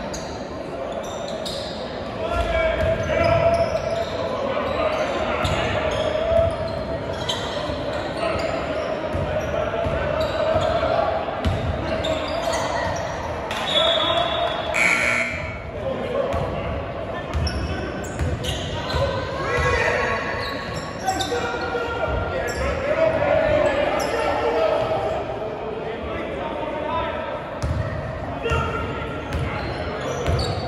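Basketball dribbled on a hardwood gym floor, with repeated bounces echoing in a large gymnasium under a steady background of players' and spectators' voices.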